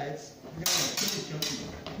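Steel practice longswords clashing: several metallic strikes and blade-on-blade scraping in quick succession, starting a little over half a second in.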